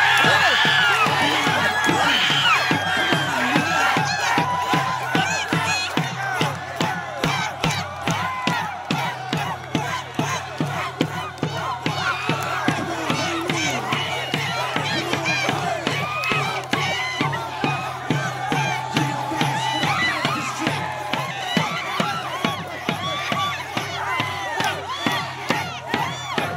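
Large stadium crowd shouting and cheering through a tug-of-war pull, many voices at once, with a regular rhythmic pulse of beats coming through in the second half.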